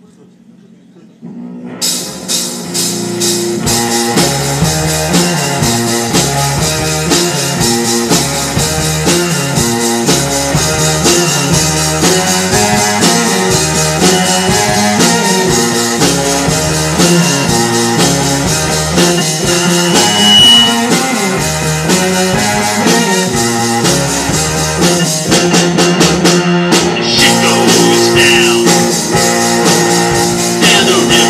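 Live rock band with electric guitar, electric keyboard and drum kit launching into a song about a second in, building within a few seconds to full volume and playing on steadily.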